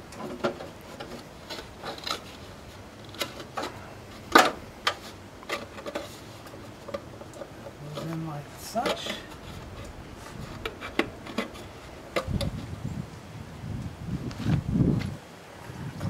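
Sheet aluminum flashing being handled and pushed up between wooden deck joists: irregular light clicks and taps, the loudest about four seconds in. A low rumble runs for a few seconds near the end.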